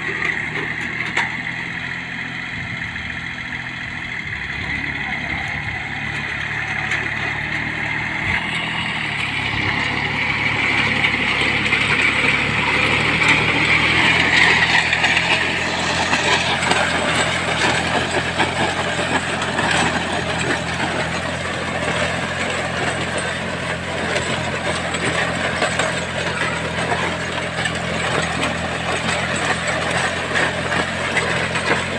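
VST Shakti MT 270 27 hp compact tractor's diesel engine running steadily under load while pulling a disc plough through dry soil. The noise of the discs working the ground swells about ten seconds in, is loudest a few seconds later, then runs on steadily under the engine.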